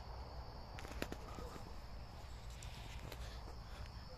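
Faint night ambience: a steady high insect trill with a few soft clicks.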